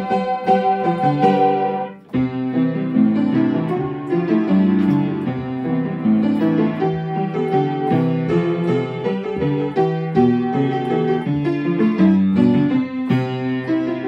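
Piano playing a lively, bouncy children's song tune in steady, even notes, with a short break about two seconds in before the playing resumes.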